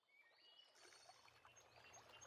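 Near silence: faint swamp ambience fading in, with a few short, high bird chirps.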